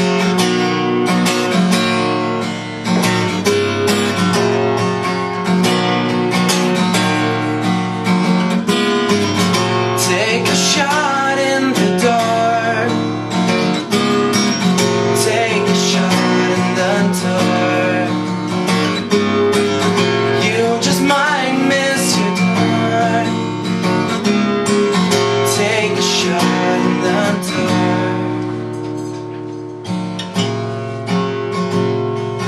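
Acoustic guitar strummed steadily in a solo live song, with a man's voice singing over it in places.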